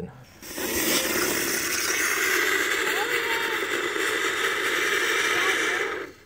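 Ground bloom flower spinner firework burning inside a carved pumpkin: a loud, steady hiss with a few faint short whistles, starting about half a second in and cutting off suddenly just before the end.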